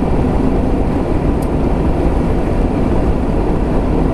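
Steady low rumble of road and engine noise inside a car's cabin while it drives along an open highway.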